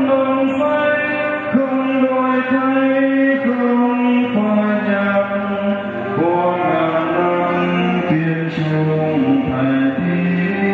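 Mixed church choir singing a slow hymn in long, held chords, the notes shifting together every second or so.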